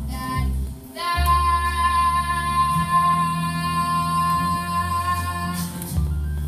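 A young girl's voice singing one long held note over a musical-theatre backing track with bass; the note comes in about a second in and is held for nearly five seconds.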